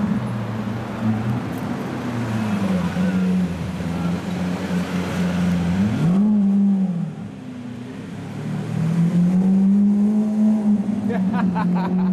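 Lamborghini Aventador's V12 engine running at low revs as the car drives slowly by, with a short rev about six seconds in that rises and falls back to a steady drone.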